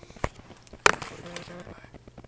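Handling noise from a camera being moved and set down: a light tap, then a sharp knock a little under a second in.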